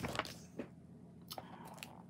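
Faint rustling and crinkling of paper pages being handled, with a few short clicks scattered through it, as a rulebook is leafed through to find a keyword.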